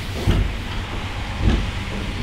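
Steady low background rumble with an even hiss, and two short low sounds about a third of a second and a second and a half in.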